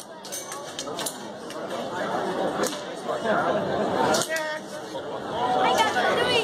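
Indistinct chatter of several people talking, with a few short clicks.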